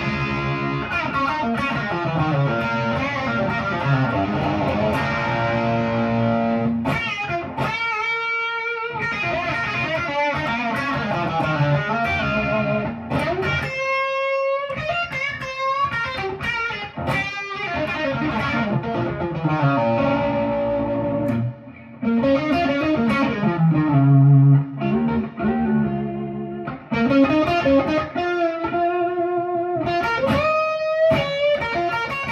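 Gibson Les Paul, a 1952 body converted to 1959 spec with Roger Daguet PAF-replica humbuckers, played as a lead: runs of picked single notes and chords in a bright, trebly tone. Long held notes ring out about eight and fourteen seconds in, and there is a brief pause a little past twenty seconds.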